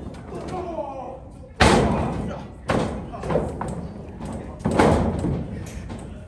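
Three sharp impacts of a pro wrestling bout in the ring: hard strikes between two wrestlers. The first and last are the loudest, with crowd voices between them.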